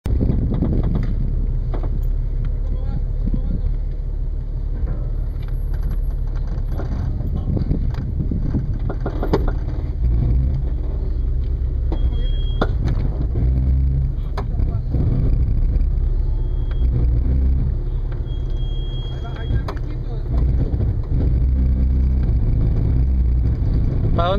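Jeep Cherokee XJ engine running at low revs as it crawls over a rutted, rocky dirt trail, a steady low rumble with occasional knocks.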